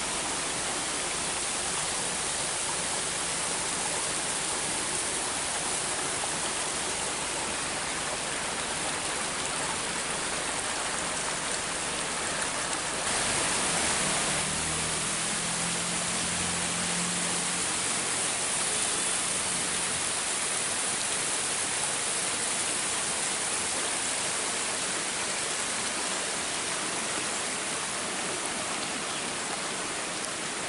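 Small mountain waterfall running with a steady rushing noise, its flow low in the dry season. Around the middle a low hum joins it for several seconds.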